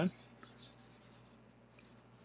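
Faint scratching of a stylus moving over a pen tablet's surface while erasing handwritten working.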